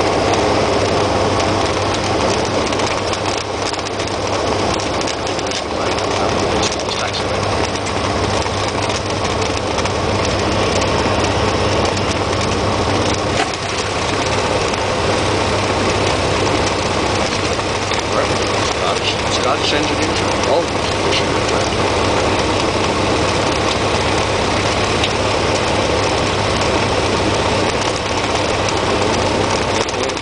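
Cessna 172XP's six-cylinder Continental engine and propeller running steadily at low taxi power, heard from inside the cockpit, with a constant low hum.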